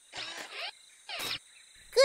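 Steady cricket chirring of a night forest, with two short noisy sounds over it: one about half a second long soon after the start, a shorter one a little past the middle.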